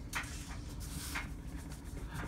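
Soft hand rubbing on a tabletop work surface: two brief scuffing strokes about a second apart, over a faint steady room hum.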